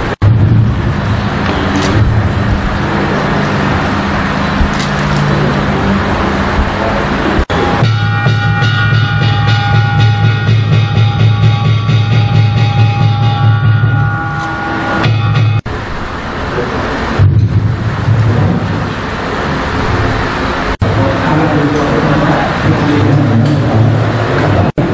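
Music with a steady low note and a regular beat, mixed with indistinct voices. The sound breaks off for an instant a few times.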